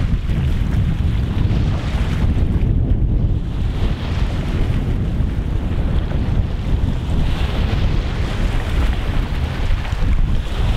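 Wind buffeting the microphone in a heavy low rumble, over small waves washing and lapping against a rocky shore.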